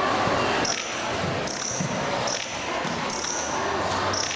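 Cricket chirping played as a recorded sound effect over a sound system, in short bursts about every 0.8 seconds beginning about half a second in, with crowd murmur beneath.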